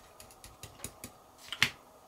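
Small scattered clicks and taps of a white-metal model tank track's links knocking together as it is handled and laid on a paper towel, the loudest click about one and a half seconds in.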